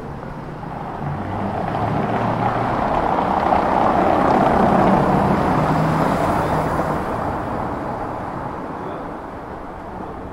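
A car driving slowly past on a cobblestone street, its tyre noise rising to its loudest about halfway through, then fading away.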